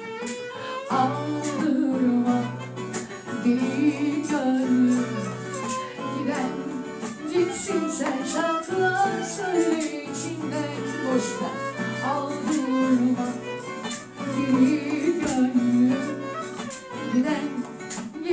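A woman singing a song into a microphone, accompanied by a strummed acoustic guitar and a bowed violin.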